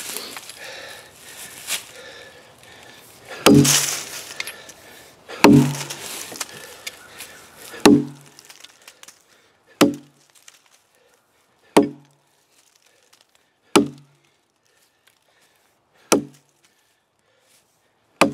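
Double-bit axe chopping into a fat-lighter pine knot in a log, swung with its grub bit: seven strikes about two seconds apart, each a sharp chop with a low knock. The first few strikes are the loudest.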